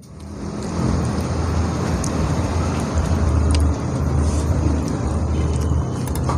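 Low, steady rumble of a nearby motor vehicle's engine, building up over the first second and then holding level.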